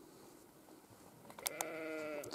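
A farm animal bleating once: a wavering, trembling call that starts about one and a half seconds in, with a couple of faint clicks around its start.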